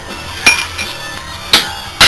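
Two light metallic clinks about a second apart: a steel pin and a steel filter dryer end plate knocking together as they are handled, the first with a short ring.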